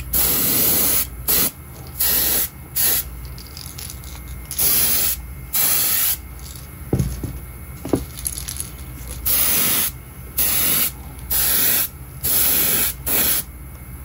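Airbrush spraying paint in about ten short bursts of hiss, each a second or less, with pauses between them. There are a couple of small knocks in the middle of the run.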